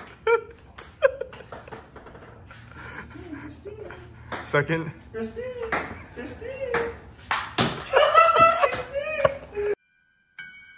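Table tennis rally: the ball clicks sharply and irregularly off paddles and table, with voices and laughter over it, loudest near the end. The sound cuts off abruptly just before the end.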